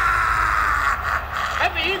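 A man's long, held yell lasting about a second and a half, then a man's voice starting to speak near the end.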